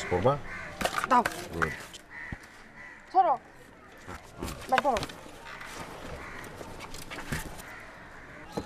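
A crow cawing a few short, falling caws, between brief bits of speech.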